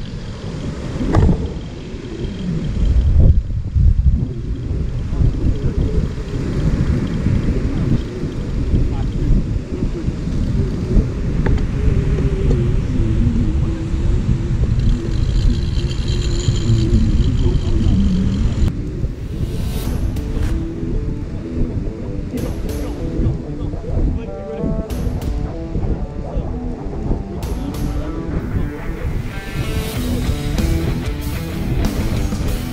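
Strong wind buffeting the microphone over the sound of rough surf. Rock music with guitar fades in over the last several seconds.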